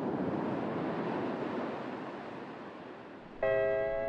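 Ocean waves washing in the distance, a steady rush that swells about a second in and then eases off. Near the end a guitar comes in with a plucked chord as Hawaiian music starts.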